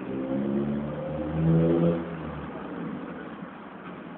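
A motor vehicle's engine passes, its pitch stepping up as it accelerates, loudest about a second and a half in and fading away by about halfway through.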